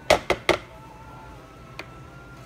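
Three sharp clacks in quick succession, about a fifth of a second apart, as the plastic food processor bowl is handled with a spatula, then a faint tick near the end.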